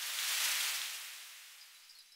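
A whoosh of hissy noise that swells quickly and fades away over about two seconds: a transition sound effect laid over an edit.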